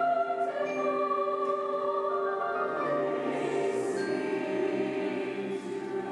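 Large mixed choir of adult and children's voices singing slow, sustained chords. Sibilant consonants stand out about halfway through.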